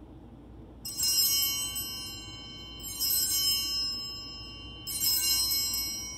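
Altar bells rung three times, about two seconds apart, each a bright jangle of high tones that rings on and fades. The ringing marks the elevation of the host at the consecration.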